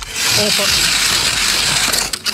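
Hand ice auger being cranked down through pond ice: the blades cut with a loud, steady scraping grind.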